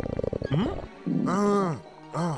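Cartoon stomach-growl sound effect: a low, rapidly pulsing growl that stops a little under a second in and plays as the growl of some animal in the dark. It is followed by a short, frightened cartoon voice.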